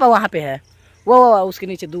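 Speech only: people talking and calling out, with a drawn-out exclamation about a second in.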